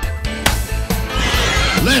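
A horse whinny sound effect over background music, starting about a second in.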